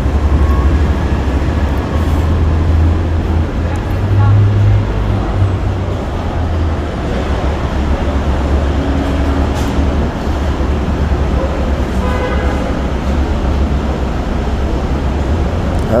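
Steady low rumble of road traffic and idling vehicles at an airport terminal curb.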